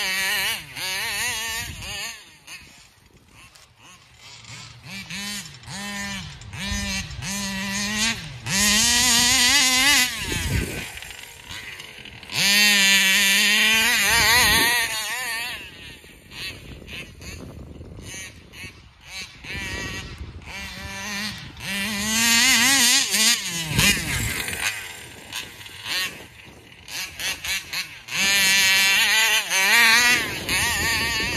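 Two-stroke engine of a gas-powered large-scale RC car running well, revving up and easing off again and again as the car is driven around, its pitch rising and falling. It comes through loudest in several close passes and fades between them when the car runs farther off.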